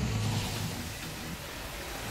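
Cartoon energy-blast sound effect: a rushing burst of noise, loudest at the start and slowly dying away over a steady low hum.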